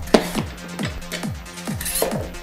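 Electronic dance music with a steady, fast kick-drum beat. Just after the start there is one sharp clank from a weight plate being handled at a barbell.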